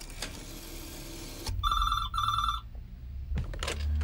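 A rotary-dial telephone ringing with the British double ring: two short rings in quick succession about one and a half seconds in. A low rumble follows.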